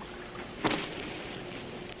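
Steady background hiss with a faint low hum, and one brief, sudden sound about two-thirds of a second in.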